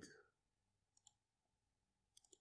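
Near silence, with one faint computer mouse click about a second in.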